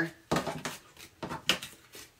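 Playing cards being gathered off a wooden board and squared up in the hands: a handful of short taps and clicks.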